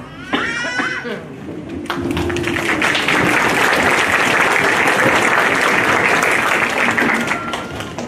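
A short shout near the start, then an audience clapping and cheering. The clapping builds about two seconds in, holds steady and eases off near the end.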